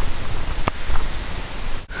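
Steady hiss with a single sharp click about two-thirds of a second in, then a brief dropout just before the end.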